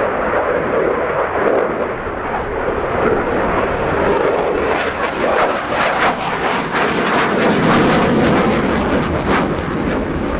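Jet noise from a Swiss Air Force F/A-18C Hornet's two General Electric F404 engines during a display pass: a loud, steady rush, with rapid sharp crackles from about five seconds in until near the end.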